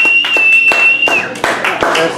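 A small audience clapping at the end of a song, the claps distinct and separate, with one long, steady, high whistle over the first half that dips in pitch as it ends.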